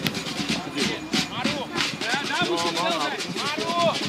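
Football players and coaches shouting calls across the pitch: several young voices overlapping in rising-and-falling shouts, with no clear words, busiest in the second half.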